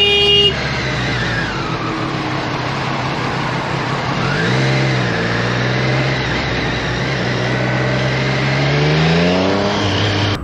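A horn blast that cuts off about half a second in, then a motorcycle engine running under wind noise at highway speed. The engine pitch rises briefly around the middle and climbs steadily near the end as the bike accelerates.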